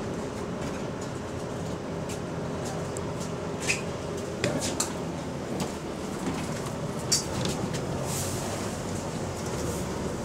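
Interior noise of a Wright-bodied Volvo double-decker bus under way, heard from the upper deck: a steady engine and road drone with sharp rattles and clicks from the fittings, the loudest a few seconds in and about seven seconds in, and a short hiss about eight seconds in.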